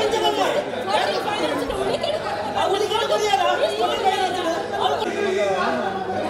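Several men talking over one another at once, a babble of overlapping voices.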